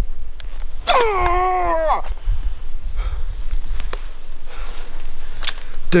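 A man's single drawn-out exclamation about a second in, lasting about a second and dropping in pitch at its start. It is followed by footsteps and rustling through leaf litter over a steady low rumble, with a sharp click shortly before the end.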